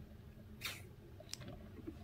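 Quiet room tone with a faint, short rustle a little after half a second in and a small click about a second and a half in.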